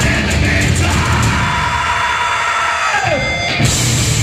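Live hardcore punk band playing through a loud PA. The drums and bass drop out about a second in, leaving the guitar ringing; a falling pitch glide comes near the three-second mark, and the full band comes back in just before the end.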